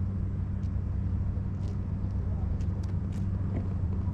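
Steady low engine drone, like a motor idling close by, with a few faint light clicks over it.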